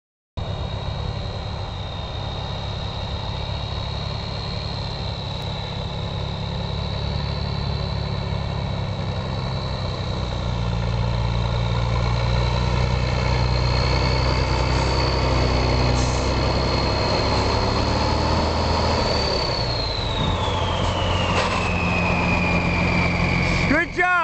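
An M35 deuce-and-a-half military truck's turbocharged engine running as the truck drives up a dirt trail toward the listener. It is a deep rumble with a steady high whine, both growing louder as it nears. Over the last few seconds the whine drops in pitch as the truck slows.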